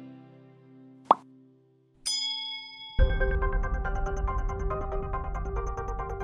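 Animated subscribe-button sound effects: a short sharp pop about a second in, then a bell-like ding that rings out briefly. Halfway through, music with heavy bass and a steady run of notes comes in.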